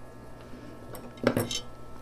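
Light clinks and knocks of a plant pot and tools being handled, with a short murmur of voice about a second and a quarter in.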